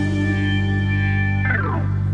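Live band holding a sustained chord at the end of a song, with effects-laden electric guitar prominent. Near the end, one note glides steeply downward in pitch.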